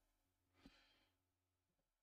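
Near silence: room tone, with one faint click about two-thirds of a second in.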